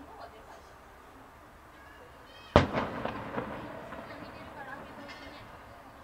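Aerial firework shell bursting once, about two and a half seconds in: a single sharp boom followed by an echo that fades over about two seconds.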